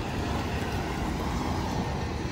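Steady rumble of city street traffic, motor vehicles running on the road with no single distinct event.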